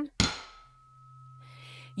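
A tuning fork is struck once on a hard surface, giving a sharp knock. It then rings with a steady, clear high tone for nearly two seconds, and a low steady hum joins beneath it about half a second in.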